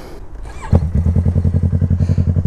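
Yamaha R3 sportbike's parallel-twin engine, low at first, then suddenly much louder about two-thirds of a second in as the throttle opens. It then runs on steadily with an even, pulsing beat.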